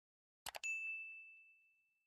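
Two quick clicks, then a single faint, high metallic ding that rings on one pitch and fades away over about a second and a half.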